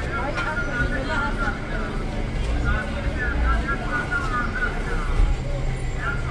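Busy street ambience: passers-by talking in the background over a low rumble of traffic, which swells briefly in the middle and again near the end.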